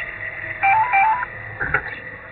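A short electronic ringtone melody of a few stepped notes, going up and down, about half a second in, over a steady thin electronic whine.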